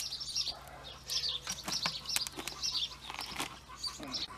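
Small birds chirping over and over in short, high-pitched calls, with a few sharp clicks or snaps scattered among them.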